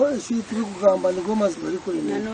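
A voice chanting a long run of repeated 'o' syllables, the pitch swinging up and down from one syllable to the next.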